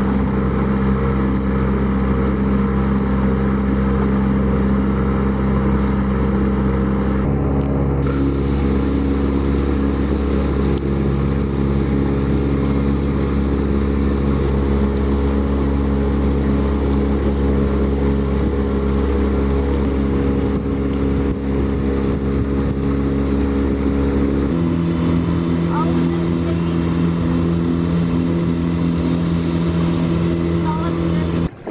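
A boat's motor running steadily, heard from on board as a low drone. Its pitch jumps abruptly about seven seconds in and again near twenty-five seconds.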